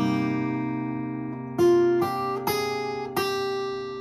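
Acoustic guitar, capoed, with an A minor 7 chord strummed just before and left ringing as it slowly fades, then four single melody notes picked over it in the second half.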